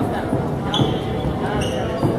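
Basketball bouncing on a hardwood gym floor amid crowd chatter, with a brief high squeak a little under a second in.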